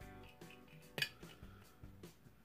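Faint background music of soft sustained notes, with a single sharp clink of hard objects knocking together about a second in.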